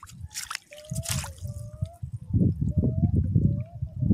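Feet wading through shallow seawater, the water sloshing and splashing, with two brief splashes in the first second and a half. Wind rumbles on the microphone, heavier in the second half.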